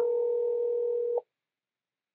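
A telephone call-progress tone from a smartphone as an outgoing call is placed: one steady tone held for about two seconds that cuts off suddenly, most likely the first ring of the call.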